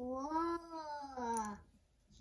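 A single drawn-out vocal sound lasting about a second and a half, gliding up and then down in pitch.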